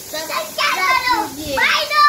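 Young children's voices, talking and calling out in high pitch.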